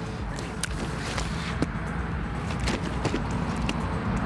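Handling noise as a grass carp is lifted off the ground: irregular knocks, slaps and rustles over a low steady rumble.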